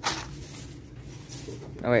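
Wire spinner display rack turned by hand, with a brief rattle of its metal peg hooks right at the start, then only low background.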